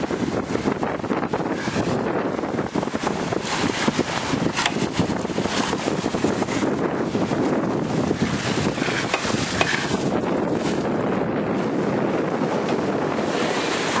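Wind buffeting the microphone over the steady rush of water along the hull of a Pearson 36 sailboat under sail, with frequent short crackles from the gusts.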